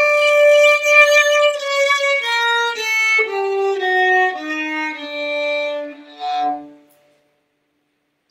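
Violin playing a raga scale in Hindustani style, one note at a time, stepping down to a low note that fades out about seven seconds in. The notes are held from about half a second to two seconds.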